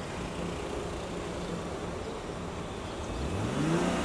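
Car engine revving up about three seconds in, its pitch rising quickly, over steady street noise.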